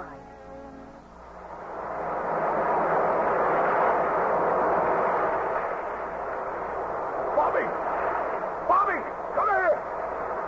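Radio-drama sound effect of surf: a wave's rushing noise swells up over about two seconds, holds, then slowly eases off. Short rising-and-falling pitched calls come in near the end.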